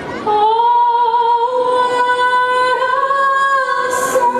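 A woman's voice in the fireworks-show soundtrack holds one long sung note that steps up slightly in pitch twice. Right at the end comes a brief sharp crack.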